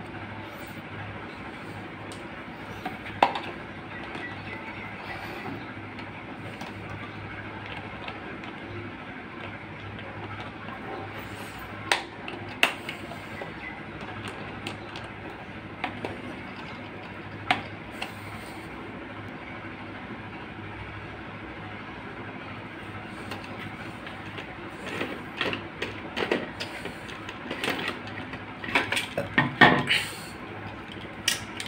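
Scattered sharp clicks and knocks from the plastic pump assembly of a garden pump sprayer being handled and worked with pliers, thickening into a quick run of clicks near the end, over a steady background noise.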